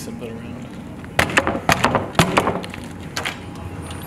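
A quick series of six or seven sharp knocks, pounding on a wooden room door, starting about a second in and lasting about a second and a half.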